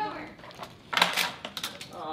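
A quick run of clattering knocks, loudest about a second in, as pieces of a tabletop Rube Goldberg machine are set off and tumble on the table.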